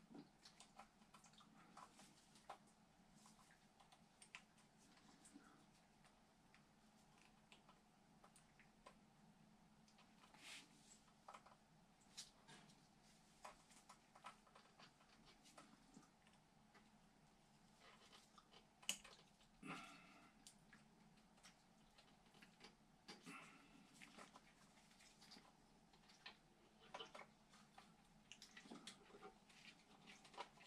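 Near silence with faint, scattered clicks and taps of gloved hands handling small metal parts at an oil burner's cad cell assembly, one sharper click a little past halfway.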